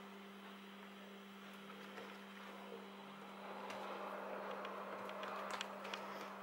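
Faint soft rustling and pressing of hands folding thin raw dough over meat filling and sealing its edges on a silicone mat, a little louder in the second half with a few faint taps. A steady low hum lies under it throughout.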